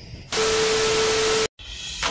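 A burst of static-like hiss with one steady tone through it, starting and stopping abruptly after about a second, as for an edit transition; faint music begins near the end.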